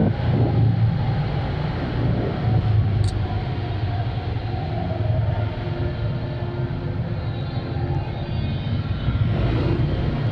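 A motorcycle engine running steadily with a low rumble while riding, heard from the rider's camera, with a short click about three seconds in.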